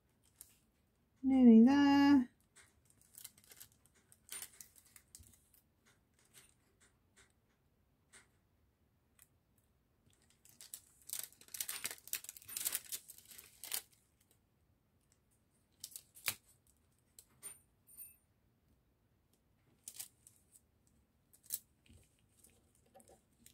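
Hands working washi tape along the edge of a diamond-painting canvas: scattered light ticks and rustles, with a run of scratchy tape and paper noise for about three seconds midway. About a second in comes a loud, one-second vocal sound with a wavering pitch, the loudest sound here.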